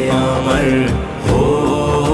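Male voices singing a devotional Urdu kalam (naat) in a slow, chant-like style, with a brief dip about a second in.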